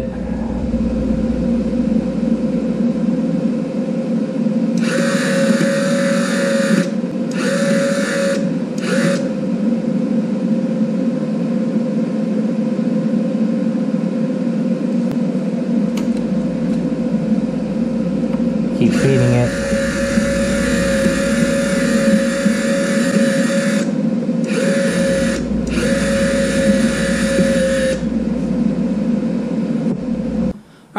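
MIG welder's wire feed motor whirring in several runs of a few seconds each, with short stops between them, as welding wire is driven through the gun's liner to the tip. Under it is the steady hum of the switched-on welder.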